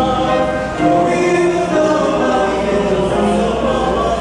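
Small male choir singing a slow piece in sustained chords, the notes held and changing every half second or so.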